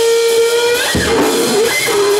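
Electric guitar feedback through a loud amp: one sustained high tone that rises slightly, then about a second in breaks into bending, wavering pitches. A single low drum hit lands at the break.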